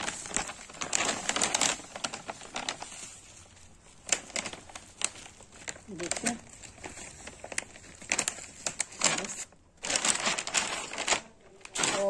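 Plastic cement bag crinkling and rustling in irregular bursts as cement is shaken out of it onto a heap of sand.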